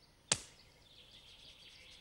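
A single sharp click about a third of a second in, followed by faint, even outdoor background hiss.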